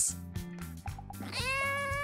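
A black kitten giving one long meow, starting about two-thirds of the way in, rising at first and then held, over soft background music.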